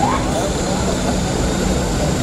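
Steady drone of a propeller aircraft's engines on the apron, with a crowd's voices mixed in.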